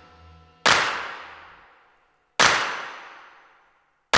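Two sharp, bang-like impact hits, the first less than a second in and the second nearly two seconds later, each ringing out and fading over about a second: trailer sound-design hits timed to the title card.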